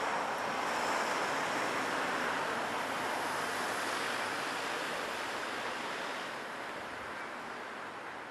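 A van driving past along the street: a steady rush of engine and tyre noise that fades away over the last couple of seconds.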